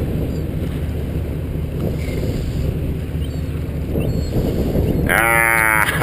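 Steady low rumble of a sport-fishing boat's engine with wind on the microphone. About five seconds in, a man breaks into a loud laugh.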